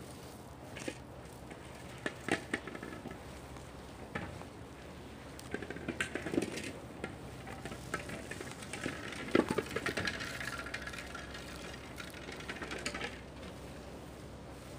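Fishing nets and plastic net floats being handled on a quay: scattered light knocks and clatter with rustling, busiest in the second half.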